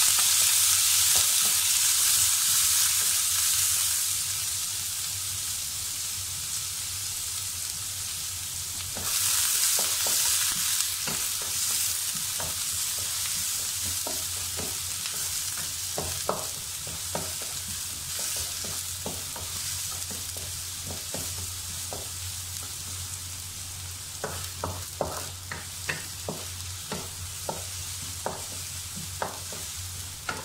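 Sliced onions sizzling in hot oil in a wok while being stirred with a wooden spatula. The sizzle is loudest at the start, swells again about nine seconds in, then gradually settles. In the last few seconds the spatula knocks against the pan many times in quick taps.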